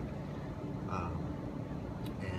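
Steady low rumble of distant street traffic, with a faint short sound about a second in.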